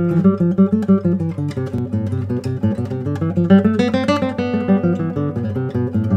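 Nylon-string classical guitar played fingerstyle: a fast line of single plucked notes running through the C major scale, with a rising run near the middle, linking one region of the fretboard to the next.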